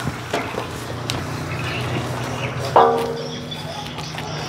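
Water running from a garden hose into an aluminium basin, a steady wash of noise with a few small clicks. A brief pitched vocal sound comes near three seconds in.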